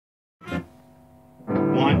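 A short sharp sound about half a second in, then held notes from an electric guitar with a man's voice starting to count the tune in about a second and a half in.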